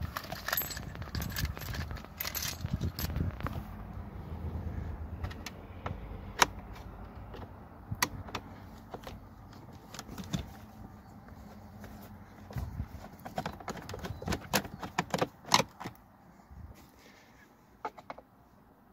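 Scattered small metallic clicks and jingling from a screwdriver and screws being undone, and from handling the dashboard trim of a Mazda 6. The clicks come irregularly, with a few sharper ones, and it quietens near the end.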